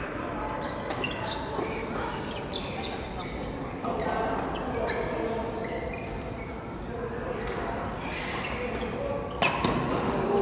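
Badminton rally in a large hall: sharp racket-on-shuttlecock hits and short shoe squeaks on the court mat, with background voices. A louder hit comes near the end.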